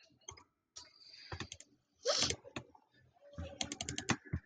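Computer keyboard keystrokes and mouse clicks, scattered at first, then a quick run of keystrokes near the end.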